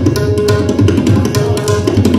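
Two tabla sets played together in a fast duet: dense, rapid strokes on the dayan, with the bayan's deep bass underneath. A harmonium holds the repeating lehra melody of teentaal.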